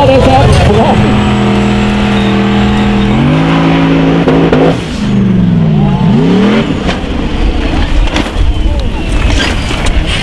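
Formula Offroad hill-climb buggy engines at high revs. The pitch holds steady, steps up about three seconds in, then swings sharply up and down before turning rough and uneven in the last few seconds.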